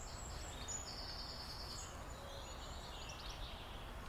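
Quiet garden ambience: faint distant birdsong over a steady low rumble.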